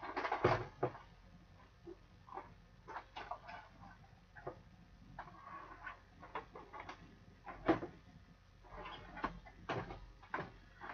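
Irregular clicks, taps and rustles of small objects being handled. The loudest come about half a second in and again near the end.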